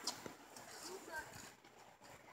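Faint, brief voice sounds with a few soft clicks in between, all much quieter than the talking just before.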